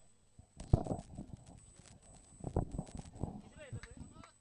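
Faint field sound at a cricket match: scattered short knocks and clicks with distant voices, and a few short gliding calls near the end.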